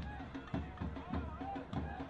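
Stadium crowd sound with a steady drum beat, about two beats a second, and faint voices under it: supporters drumming during a soccer match.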